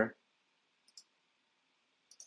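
Two faint, sharp computer mouse clicks in quick succession about a second in.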